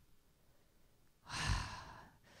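A woman's breathy sigh, 'ha', about a second and a half in, after a silent pause: an exhale of amused amazement at the audience's answer.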